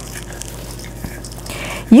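Soft, quiet rustle and scraping of chopped green bell pepper being tipped and scraped from a plastic bowl into a stainless steel mixing bowl, with one faint tick about a second in.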